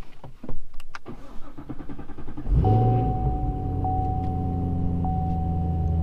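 Cold start of a 2017 Chevrolet Camaro SS's 6.2-litre LT1 V8, fitted with American Racing long-tube headers, high-flow catalytic converters and a quad-tip exhaust, heard from inside the cabin. After a few clicks, the engine fires about two and a half seconds in with a loud flare, then settles into a steady high cold idle. A steady high-pitched tone sounds over the idle.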